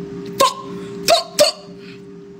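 Three short, sharp vocal tics from a woman with Tourette syndrome, one about half a second in and two in quick succession just past a second. A steady low hum runs underneath.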